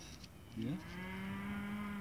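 A cow mooing: one long, low call that starts about half a second in, rises briefly in pitch and then holds steady.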